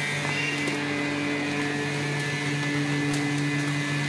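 YX-016A double-chamber vacuum packing machine running a cycle with the lid closed: its vacuum pump hums steadily at one unchanging pitch as it draws down the chamber.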